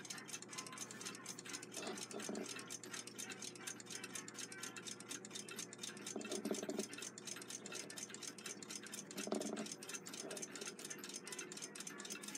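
Faint, even ticking of a mechanical clock running in the room.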